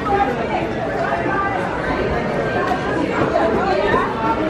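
Overlapping chatter of many shoppers' voices in a busy store, steady throughout, with no single voice standing out.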